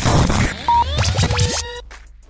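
Hip-hop radio jingle with turntable scratching effects and short held tones. It stops shortly before the end.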